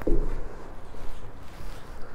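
Someone moving on a gritty floor: scuffing footsteps and the rustle of clothing and a handheld camera, with a click at the start.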